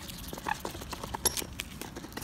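Mute swan's bill pecking seeds from a bare palm: quick, irregular clicks and small knocks as the bill dabbles in the hand.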